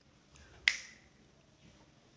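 A single sharp click or snap a little under a second in, with a brief ringing tail.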